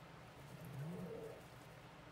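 Faint, low cooing bird call, rising slightly in pitch about a second in, over quiet room tone.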